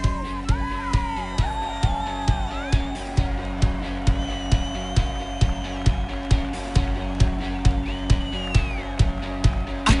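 Instrumental intro of a pop-rock song played by a band with electric guitars and a drum kit, keeping a steady beat of about two hits a second.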